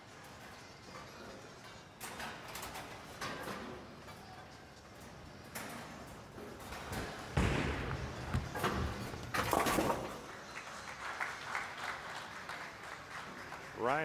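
A bowling ball drops onto the wooden lane with a heavy thud about halfway through and rolls with a low rumble. About two seconds later comes a sharp crash at the pin deck, on a spare attempt at a lone 10 pin. Bowling-centre crowd noise runs underneath.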